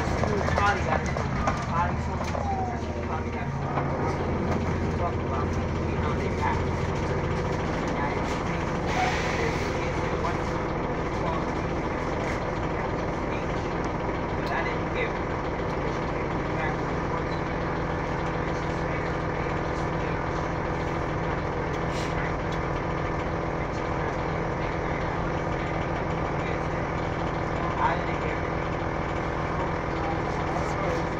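Cabin noise inside an Orion VII diesel-electric hybrid transit bus: a steady drivetrain drone as the bus slows and comes to a stop, then stands idling. A stronger low hum drops away about a quarter of the way in.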